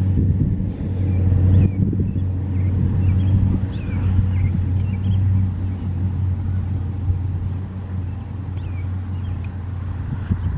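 Canadian Pacific GE AC4400CWM diesel locomotive, with its 16-cylinder FDL prime mover, approaching at the head of a freight train: a steady low engine drone, loudest in the first half. A few faint short high chirps sound over it.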